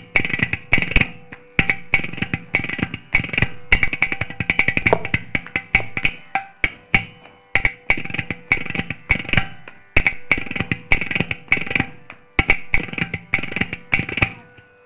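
Carnatic percussion solo: mridangam, with ghatam, playing fast, dense stroke patterns in phrases separated by brief breaks.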